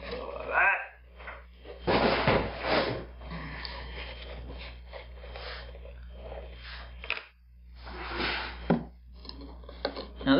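Plastic jugs of two-part urethane casting resin being handled on a table: irregular knocks and rubs of hard plastic as one jug is put down and another's screw cap is twisted off.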